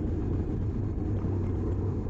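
Steady low wind rumble on a bike-mounted GoPro's microphone, mixed with tyre and road noise from a road bike racing at about 24 mph.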